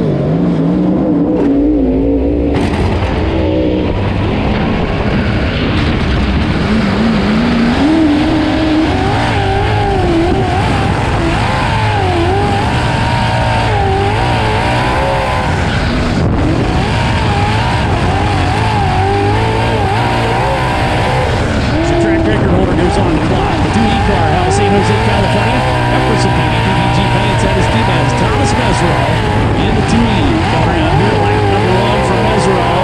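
Onboard sound of a USAC sprint car's V8 engine on a dirt oval qualifying run: it runs low for the first few seconds as the car rolls out, then climbs in pitch and swings up and down as the driver gets on and off the throttle around the track.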